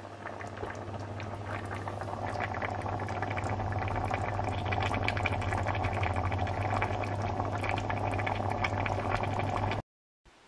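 Pan of chicken, peppers and tomato sauce sizzling and bubbling on the hob, a dense crackle of small pops that grows louder over the first few seconds, over a steady low hum. It cuts off suddenly near the end.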